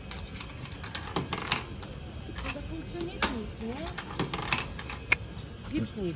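Coin clicking and rattling in the metal coin mechanism of a pet-food vending machine: a string of irregular sharp clicks, a few seconds' worth, as the coin is worked through the slot. The machine gives no sign of dispensing; it is not working.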